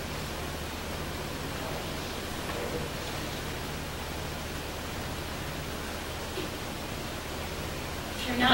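Steady hiss with a low, steady hum underneath: room tone of the recording during a pause, with no speech.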